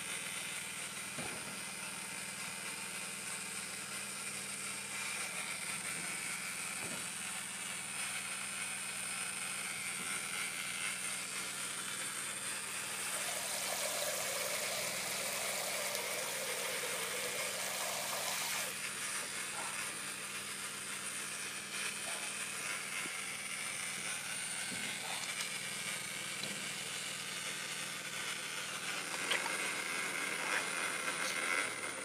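Jurgens XT 140 Dewhot 6-litre geyser running with water flowing through its hoses, a steady low hum throughout. From about 13 to 19 seconds in, a louder hiss of water spraying from a shower head into a basin, which cuts off suddenly; a few small handling clicks near the end.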